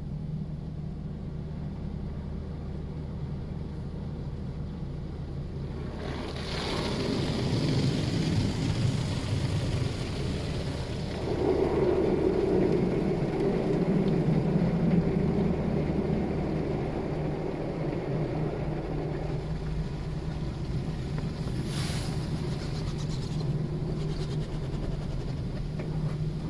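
Automatic tunnel car wash heard from inside the car: a steady low hum, then from about six seconds in water spraying onto the glass, and from about eleven seconds the spinning cloth brushes scrubbing across the windshield and body, louder for several seconds before easing.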